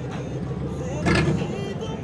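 Engine of a lowered Chevrolet pickup truck running as it drives slowly past, with a louder surge about a second in. Voices are heard in the background.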